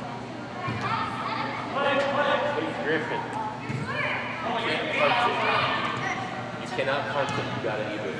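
Voices calling and shouting in a large indoor soccer hall, with a few sharp thuds of the ball being kicked on the turf.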